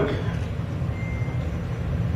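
A steady low rumble fills a pause in a man's speech, with a faint thin high tone briefly about a second in.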